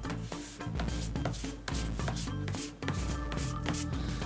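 Absorene cleaning putty rubbed across a paper poster by a gloved hand in repeated short strokes, a dry scuffing that lifts dirt off the paper. Soft background music plays under it.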